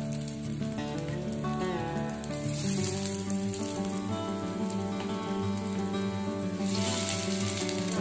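Beetroot cutlets sizzling as they shallow-fry in oil in a nonstick pan, the hiss swelling a few times as fresh patties go into the hot oil, under steady instrumental background music.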